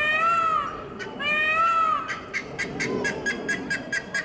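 Two drawn-out, rising-and-falling wailing calls, each just under a second long. Then, from about halfway, a helmeted guineafowl gives a rapid run of sharp clicking chatter, about five calls a second.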